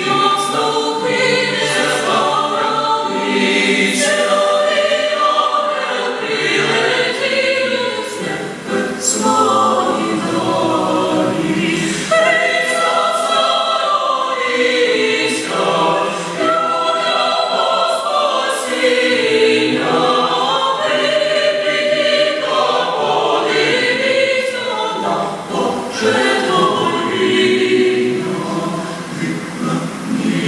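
Mixed choir of young men's and women's voices singing a Ukrainian Christmas carol in harmony.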